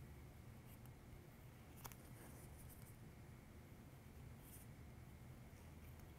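Near silence with faint scraping of a spatula tool's tip pressing creases into cardstock petals on a soft surface, and one small click about two seconds in.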